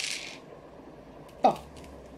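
Hands handling items on a table: a short rustle of paper or packaging at the start, then a single brief sound gliding down in pitch about a second and a half in, the loudest moment.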